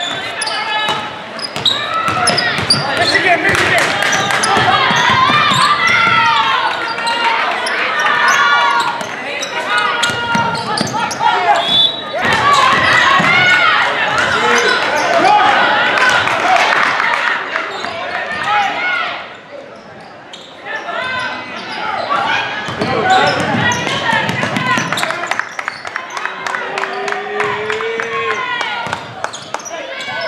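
Basketball game sounds in a gym: a ball bouncing on the hardwood floor under indistinct shouts and voices from players and spectators, echoing in the large hall. The noise drops briefly about two-thirds of the way through.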